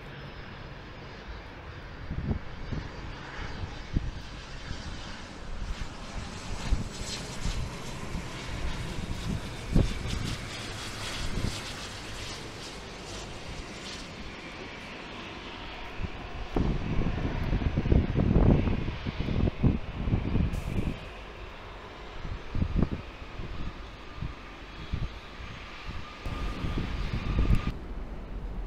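Jet aircraft engines on landing approach, a steady whine and rush, with irregular gusts of wind buffeting the microphone, heaviest about two-thirds of the way through.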